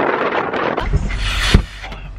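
Wind buffeting the microphone, then a car's idling engine humming low and steady once inside the cabin, and a car door shutting with a single thump about a second and a half in.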